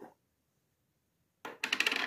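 Plastic lid of a cream tub clattering as it is taken off and handled: a quick run of sharp clicks lasting about half a second, starting about a second and a half in.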